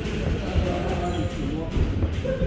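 Dull thuds of feet moving and stepping on a boxing ring's canvas floor, with indistinct voices in the background.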